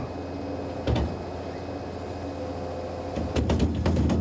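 Diet feeder mixer running with a steady low hum as a straw bale is tipped into its twin vertical-auger tub, with a knock about a second in and a run of clatters near the end.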